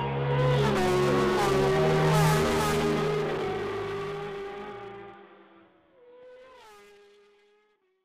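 Outro music with steady bass notes mixed with a racing engine revving, its pitch sliding up and down. The bass stops about five seconds in, and a last rev-like glide fades out near the end.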